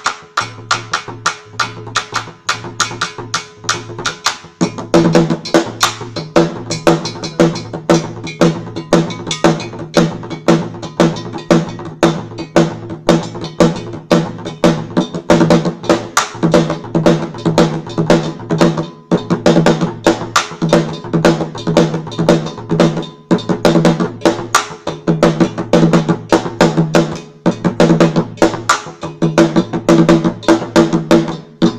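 West African drumming: a repeating bell pattern and hand drums keep a steady, fast rhythm, and a deeper drum part comes in about four and a half seconds in and carries on through.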